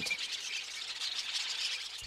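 Nature ambience: a steady high hiss of insects, with a brief bird chirp just after the start.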